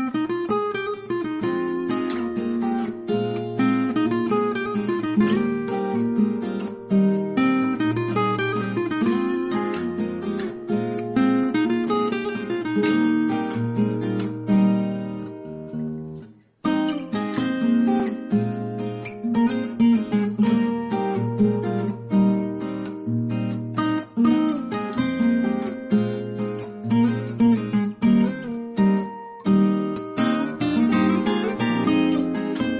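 Background music played on acoustic guitar, strummed and picked. It fades out and stops briefly about halfway through, then starts again.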